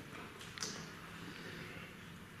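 Quiet room tone in a hall, with one faint, short rustle about half a second in.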